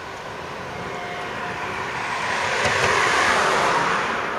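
A vehicle passing close by, its rushing noise swelling to a peak about three seconds in and starting to fade at the end.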